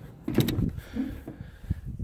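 Aluminum horse-trailer tack room door being unlatched and pulled open: a few sharp metal clacks about half a second in, then lighter knocks.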